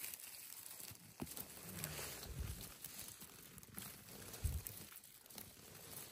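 Faint rustling of moss, twigs and undergrowth as a gloved hand reaches in to pick chanterelle mushrooms. A click about a second in, and two low bumps, around two and a half and four and a half seconds in.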